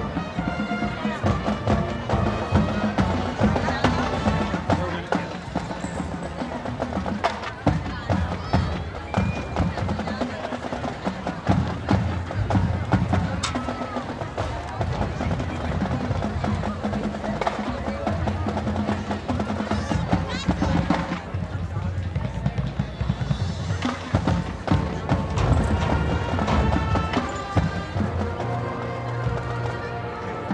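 High school marching band playing its halftime show, with drums. It is heard from across the stadium on the visitors' side, so it sounds distant.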